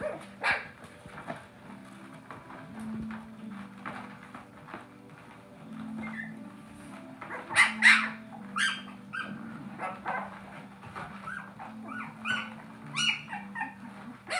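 Eleven-day-old Siberian husky puppies whimpering and squealing in short, high cries, the loudest a pair about eight seconds in, then a run of short rising cries near the end.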